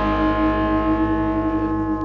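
Noise-rock recording: guitars hold a droning chord that rings on steadily, its high end slowly fading.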